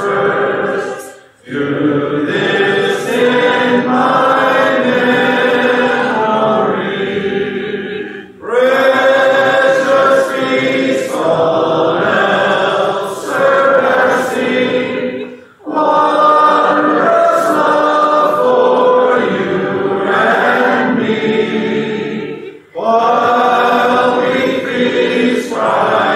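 Congregation singing a hymn a cappella, voices only, in phrases of about seven seconds with a brief pause for breath between each.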